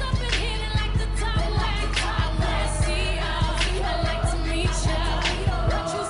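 Pop dance track with a sung vocal over a steady drum beat of about two hits a second and a heavy bass line; the bass drops out shortly before the end.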